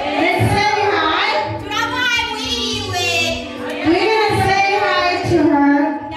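Women singing a song into handheld microphones, amplified through a PA, with long held notes that waver in pitch.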